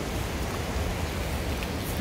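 Steady rush of a fast-flowing mountain stream running over rapids, an even noise with no separate splashes.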